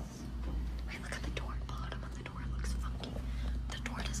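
Hushed whispering, with short rustling and handling noises, over a steady low hum.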